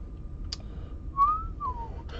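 A person whistling briefly: a short note sliding up, then a second note sliding down, with a light click about half a second in.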